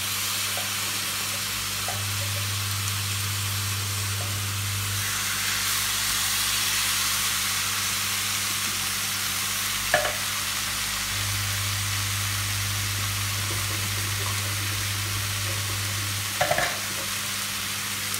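Canned diced tomatoes sizzling in a hot frying pan with rice, capsicum and onion while being stirred with a spatula: a steady sizzle over a low steady hum, with a light knock of the spatula about ten seconds in.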